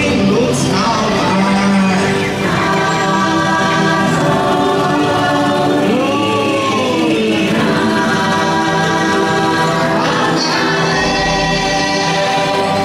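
Ride soundtrack of choral singing over music, held chords with a voice line that slides up and down in pitch a few times.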